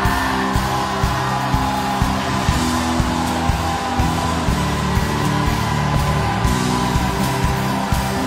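Live church worship band playing an upbeat praise song: drums on a steady beat about twice a second, electric guitar and keyboard holding sustained chords, with the congregation shouting and cheering underneath.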